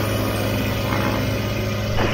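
Ultralight aircraft's piston engine running steadily at low power while the plane taxis onto the runway to line up, a constant low hum.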